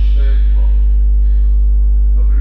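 Loud, steady electrical mains hum with a buzzing stack of overtones, with faint voices over it.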